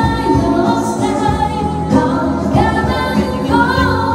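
A woman singing into a microphone over backing music, holding long notes of about a second each.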